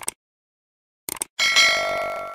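Sound effects of a subscribe-button animation: a mouse click at the start, two quick clicks about a second in, then a notification bell chime that rings on and fades.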